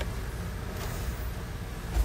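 Room tone between sentences: a steady low background rumble, with a faint brief hiss about a second in.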